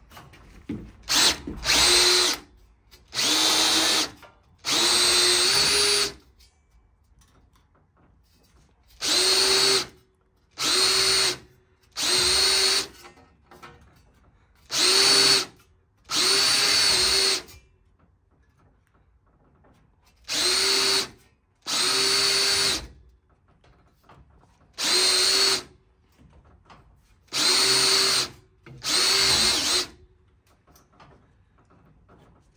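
Schwartmanns Beady cordless beading machine, driven by a Makita 18 V drill unit, running in about a dozen short bursts of roughly a second each with short pauses between. Its swage wheels roll a male swage into the edge of a 0.8 mm galvanised steel band, and the motor holds a steady whining pitch during each run.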